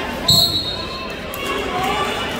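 A referee's hand slapping the wrestling mat with a single thud about a third of a second in, together with a short whistle blast, signalling a pin (fall). Background voices of spectators run throughout.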